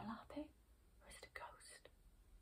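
A woman whispering very quietly, in two short bursts.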